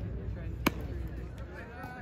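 A single sharp knock about two-thirds of a second in, over faint background voices.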